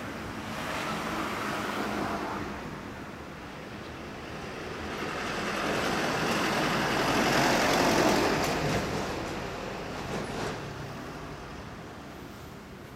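Street traffic going by: the tyre and engine noise of passing vehicles, one swelling to its loudest about seven to eight seconds in and then fading away.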